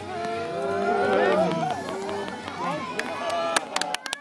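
Crowd chatter: several people talking over one another. Near the end come sharp knocks and rubbing from the camera being handled against clothing.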